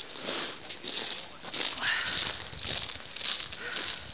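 Faint, indistinct voices of a group of people talking at a distance, over a steady background hiss.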